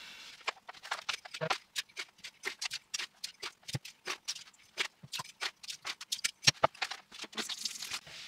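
Old aquarium compost substrate tipped from a bucket into a glass tank with a shallow layer of water: an irregular run of sharp clicks and patters as clumps and grains land on the glass and in the water.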